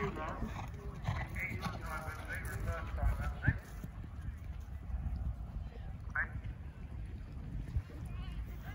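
A horse's hooves thudding on grass turf, with indistinct talk from people nearby. A steady low rumble runs underneath.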